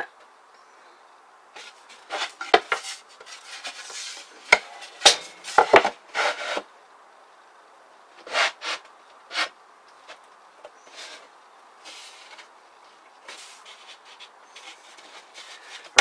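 A plywood board scraping and knocking against a plywood cabinet as it is pushed and shifted into place by hand during a trial fit. There is a dense run of irregular knocks and scrapes in the first six seconds or so, then scattered single ones.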